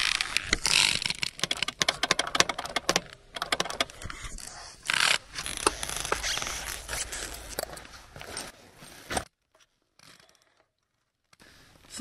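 Metal hand tools clinking and scraping in quick, irregular clicks as work on a motorcycle's drive chain begins. The sound cuts off suddenly about three seconds before the end.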